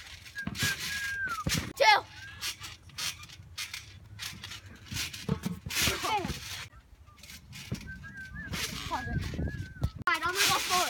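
Children's high-pitched voices squealing and laughing, with the loudest shriek about two seconds in, over repeated short thumps of bodies and a yoga ball bouncing on a trampoline mat.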